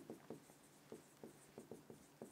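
A marker pen writing on a board: a string of short, faint strokes as letters are drawn.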